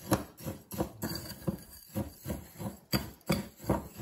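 Coarse bath salts (Epsom, pink Himalayan and sea salt with baking soda) being stirred by hand in a glass bowl: gritty scraping and rustling in repeated strokes, about three a second, with light knocks against the glass.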